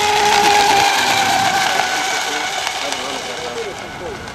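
A fast-electric RC rigger boat running flat out on the water, its motor and propeller giving a steady high whine over the hiss of spray. The whine is loudest about half a second in, then falls slightly in pitch and fades as the boat moves away.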